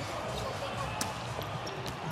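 Basketball game court sound: a steady arena background with a single sharp knock about a second in, as a missed shot comes off and play runs back up the hardwood floor.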